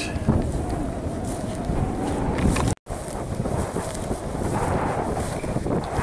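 Wind buffeting the camera microphone on an exposed hillside, a loud uneven low rumble, cut off for a moment about halfway through.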